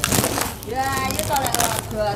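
A short burst of rustling and light knocking as eggplants are picked through by hand, then a woman's voice talking.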